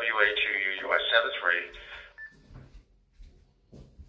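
A man's voice coming through the Icom ID-52 handheld's speaker as received D-STAR digital voice, thin and cut off above the upper mids. It stops about two seconds in, followed by a brief high beep and then quiet, with a soft knock near the end.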